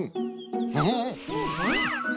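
Cartoon soundtrack: light music with short wordless voice sounds from the animated characters, a whoosh about a second in, and a sliding tone that rises and falls back near the end.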